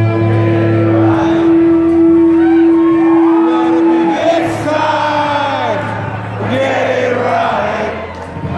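Live rock band playing loud in a concert hall, a held note ringing out for the first four seconds over the bass, with the crowd singing along.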